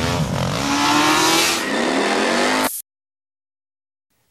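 Engine revving sound effect: a loud engine note that glides up and down in pitch over a noisy rush, then cuts off suddenly just under three seconds in.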